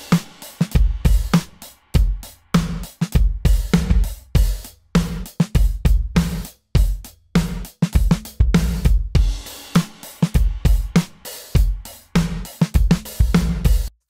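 Drum loop played through the Cubase FX Modulator's reverb module, keeping a steady beat. The reverb swells in on the snare hits and cuts off quickly, an almost gated snare reverb, while the kick drum stays dry.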